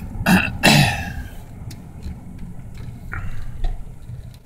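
A person coughs twice in quick succession, over the low steady rumble of road noise inside a car.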